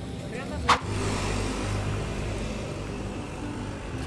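A motor vehicle's engine running steadily with a low hum, after a sharp click a little under a second in.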